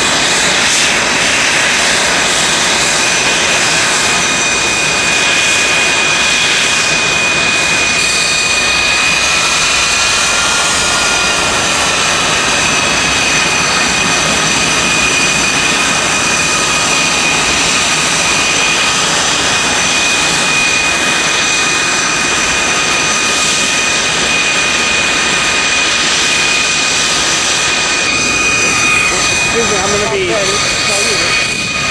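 Aero L-39 Albatros jet trainers' turbofan engines running on the ground: a loud, steady rush with a high whine held at one pitch.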